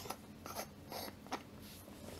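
A few faint, short clicks and small handling noises over a quiet background hiss.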